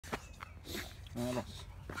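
A man's voice saying a short word, with a few light clicks and steps of walking on a dirt path.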